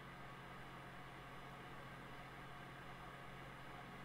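Near silence: room tone, with only a faint steady hum and hiss.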